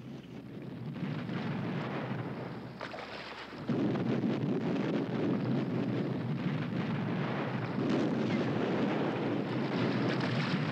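Battle soundtrack of shellfire: a continuous rumble of explosions that builds up, then jumps suddenly louder about four seconds in.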